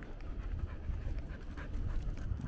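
A puppy panting softly, over a steady low rumble.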